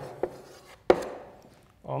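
Chalk knocking against a blackboard during writing: two light taps, then a sharper, louder knock just under a second in.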